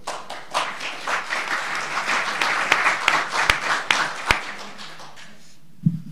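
Audience applauding: a crowd of hand claps that swells, with a few sharp single claps standing out, then dies away after about five seconds.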